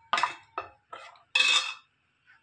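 Steel ladle stirring thick rice batter in a steel pot, scraping and clinking against the pot's sides in four quick strokes, the last one longest and loudest.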